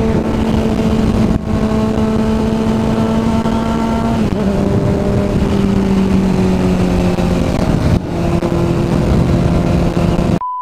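Sport motorcycle engine running along at road speed under heavy wind rush on the microphone, its note dropping a step twice, about four and eight seconds in.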